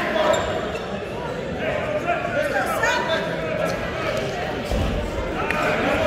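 Voices talking and calling out in an echoing gym, with scattered dull thumps and a low thud about five seconds in.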